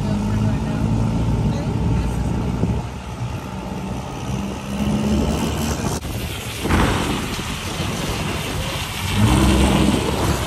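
Diesel truck engine running steadily with a low drone, a short rush of noise about two-thirds of the way through, and the engine getting louder near the end as it revs up.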